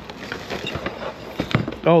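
Handling and rummaging through a box of books and paper items: rustling with several light knocks and clicks.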